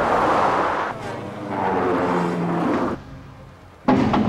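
Road vehicles passing close at highway speed: two rushes of tyre and engine noise, each lasting about a second and a half, the second beginning about a second and a half in.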